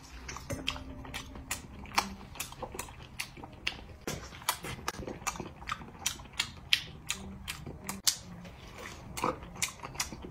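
Close-miked eating sounds: a person chewing sticky braised meat, with irregular wet smacks and clicks of the mouth and lips, several a second.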